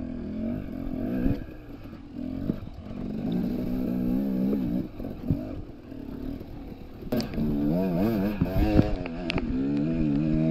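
Dirt bike engine running at low revs on a rough trail, its pitch rising and falling as the throttle is worked, wavering quickly over the last few seconds. Occasional knocks and clatter of the bike over rocks and ruts.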